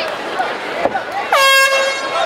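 An air horn sounds once, about a second and a half in: a short, steady blast under half a second long, the signal that ends the round. Shouting from the crowd and corners runs around it.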